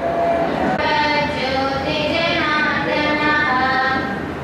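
A song begins: a voice singing long, held notes that slide between pitches, starting about a second in.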